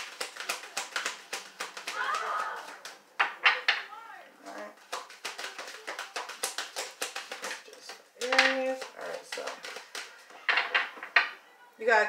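A deck of tarot cards being shuffled overhand, a rapid run of soft card-on-card clicks, with children's voices calling out now and then.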